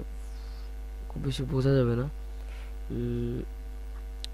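Steady low electrical mains hum on the recording, with a man's voice murmuring briefly about a second in and again near three seconds.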